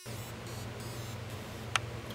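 Room tone with a steady low hum and hiss, broken by a single short sharp click near the end.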